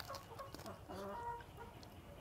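Chickens clucking: a run of short calls in the first second and a half, then quieter.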